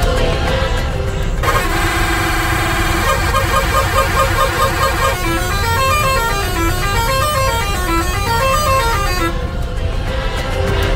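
Bus's multi-tone musical horn playing a tune. It starts with a long held chord about a second and a half in, then runs through short notes stepping up and down, and stops shortly before the end. Road and engine rumble sit underneath.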